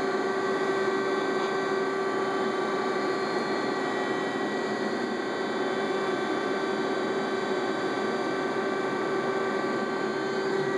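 Tsugami CNC machine running, a steady mechanical hum with a constant whine that does not change.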